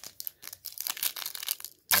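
Foil wrapper of a Topps Chrome trading card pack being torn open and crinkled by hand, a quick run of sharp crackling rustles.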